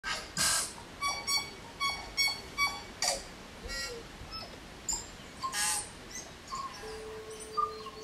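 Birds calling outdoors: a run of short, repeated chirps in the first few seconds, with a few brief noisy bursts in between, and a steady tone coming in near the end.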